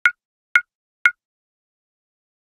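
Three short, high plop sound effects, evenly spaced about half a second apart.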